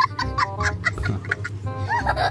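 A young child laughing hard in a string of short, high-pitched bursts, about five a second.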